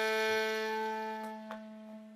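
Shakuhachi (end-blown bamboo flute) holding one long note that fades away in the second half, with a small click about one and a half seconds in.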